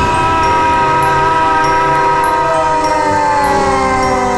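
Cartoon soundtrack: a long held tone with many overtones, sliding slowly downward in pitch.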